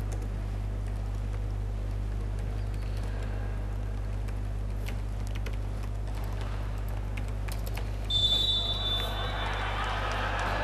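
Sports-hall room noise with a steady low hum during a volleyball timeout. About eight seconds in, a referee's whistle blows once briefly, the loudest sound. Players' voices then rise.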